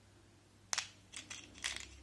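Faceted glass beads clicking and rattling against each other and the plastic compartment box as fingers stir through them: one sharp click about three-quarters of a second in, then a few lighter clicks.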